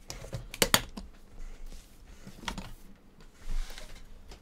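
Latches of an aluminium card-box briefcase clicking shut: two sharp metal clicks close together under a second in, then a lighter click a couple of seconds later. Near the end comes a short scrape as the case is moved across the mat.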